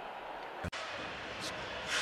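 Steady background noise of a basketball arena broadcast between commentary lines, with an abrupt edit cut about two-thirds of a second in.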